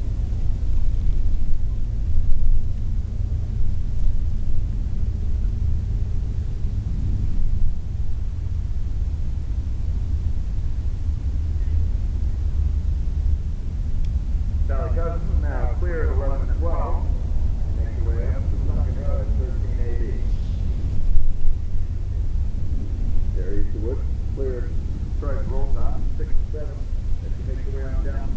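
Outdoor field ambience: a steady low rumble, with indistinct voices talking from about halfway in and again near the end.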